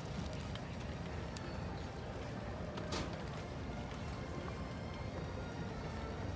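Dressage horse's hoofbeats on the arena footing under a steady low rumble of background noise, with one sharp click about three seconds in.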